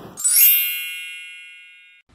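A bright chime sound effect: a quick rising sweep of high notes about a quarter second in, then several high tones ringing together and fading away.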